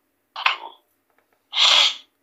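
Two short breathy vocal sounds from a person: a brief one about half a second in, then a louder, hissing one of about half a second near the end.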